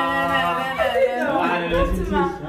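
A person's voice holding a long sung note for about a second, then sliding in pitch and breaking up.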